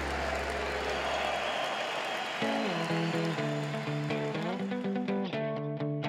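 Crowd cheering and applause in an arena for the first two seconds, giving way to background music with held guitar chords that change every second or so.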